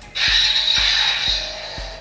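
Kylo Ren replica lightsaber switched on: its ignition sound starts a moment in with a sudden hiss that fades away over about a second and a half. It plays over background music with a steady beat.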